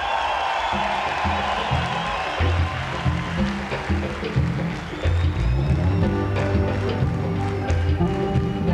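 Live pop-rock band starting a song over crowd noise: low bass and drum notes come in about a second in, and keyboard chords build to a steady groove near the end.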